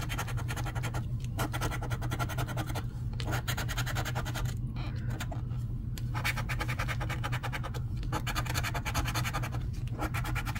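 A coin scratching the coating off a paper scratch-off lottery ticket: rapid back-and-forth strokes in runs, with brief pauses every second or two. A steady low hum lies underneath.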